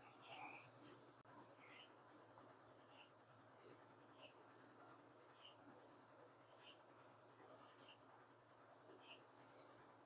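Near silence: quiet room tone, with one faint short sound just after the start and a few very faint chirps about once a second.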